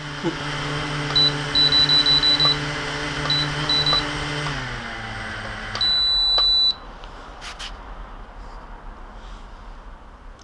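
JJRC X1 quadcopter's brushless motors idling after arming, a steady hum, with a run of short high beeps from the transmitter. About five seconds in the motors wind down and stop, followed by one longer beep.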